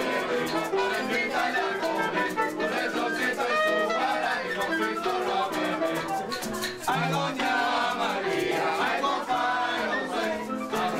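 Live plena parranda music: a group of voices singing together over hand-held pandereta frame drums and shakers keeping a steady rhythm.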